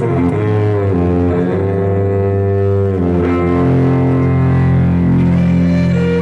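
Violin played through an amplifier, bowing sustained chords over deep low notes. The notes slide down in the first second, then settle into held chords that change about a second in and again about three seconds in.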